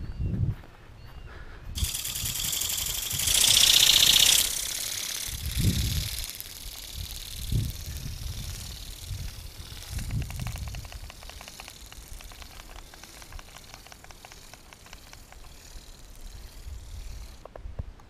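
Wind rushing over the camera microphone, setting in about two seconds in and strongest a couple of seconds later, with a few low thumps. In the second half a faint, fast, fine ticking runs under the wind.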